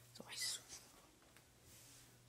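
A faint whisper about half a second in, over a low steady hum.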